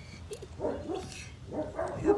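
A puppy giving a few short, separate vocal calls.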